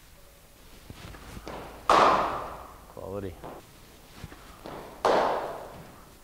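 Two sharp cracks of a cricket ball striking the bat, about three seconds apart, each ringing out in the indoor hall before fading. A short voice sound comes between them.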